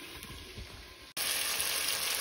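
Faint low rumbles from the phone being handled. About a second in, a steady sizzle of onions, tomatoes and radish frying in oil in a pot starts abruptly.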